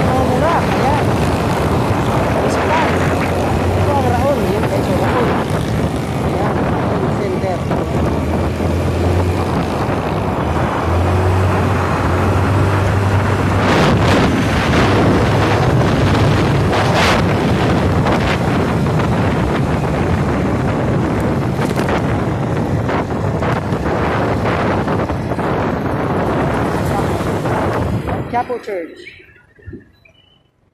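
Wind rushing over a moving phone microphone with city traffic going by, a steady loud noise with a low hum that comes and goes and a few short knocks.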